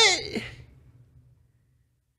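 A man's breathy vocal exclamation, not words, rising and then falling in pitch, followed by a shorter second breath about half a second in; it dies away within about a second and a half.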